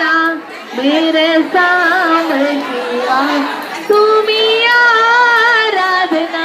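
A high voice singing a slow melody in long, wavering held notes, pausing briefly about half a second in and taking up a new note just before the four-second mark.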